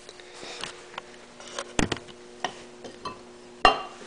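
A few sharp clicks and knocks from metal air compressor parts being handled on a workbench, the loudest about two seconds in and again near the end, over a faint steady hum.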